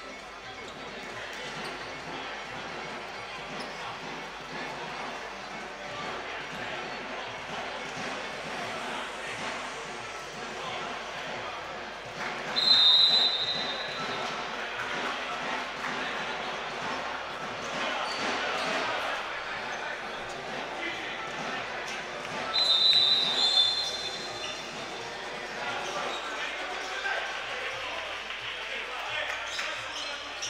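Steady gym-hall ambience with voices and ball thuds, broken twice, about 12 seconds in and again about 23 seconds in, by a short, loud, high referee's whistle blast signalling the end of the timeout.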